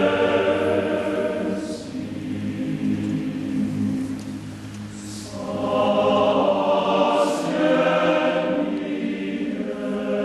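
Large men's choir singing sustained chords. About two seconds in the sound thins to the low voices and grows quieter, then the full choir swells back in a little past halfway.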